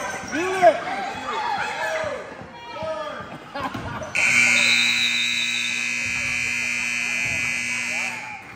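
Gym scoreboard buzzer sounding one long steady tone for about four seconds, starting about halfway in, as the game clock runs out. Before it, voices carry through the gym.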